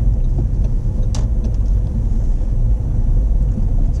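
Steady low rumble of a car on the move, heard inside the cabin, with a single short click about a second in.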